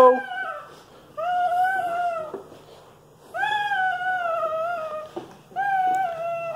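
A baby vocalizing in three long, high-pitched drawn-out calls, each lasting one to two seconds, the third running on past the end.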